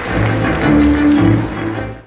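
Music with sustained notes over a steady low part, fading out quickly at the very end.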